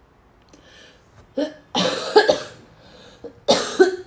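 A woman coughing in a short fit: one cough a little over a second in, a cluster of coughs around two seconds in, and another pair near the end.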